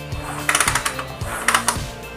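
Two short bursts of rapid mechanical clicking about a second apart, over background music: a Honda Tiger's kick-starter being kicked while the engine turns over freely with no compression, because the cam chain has slipped off its lower sprocket.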